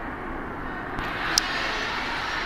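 Steady background noise of a large work hall, with a faint click about a second in and a sharp, brief click about half a second later.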